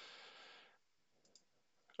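Near silence: a faint breath in the first second, then a single faint click from a computer mouse a little past halfway.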